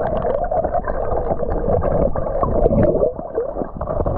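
Muffled gurgling and rushing of river water as heard by a camera held underwater, dull, with the highs cut off.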